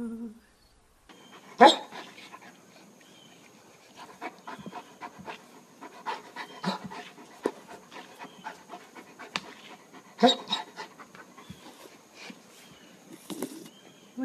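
Bernese mountain dog panting in short, uneven breaths, with two louder huffs, one about two seconds in and one about ten seconds in.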